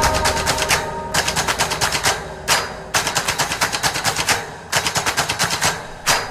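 Staccato montage sound effect of rapid shot-like clicks, about ten a second, in bursts of roughly a second with short gaps between them, and a single lone hit about two and a half seconds in.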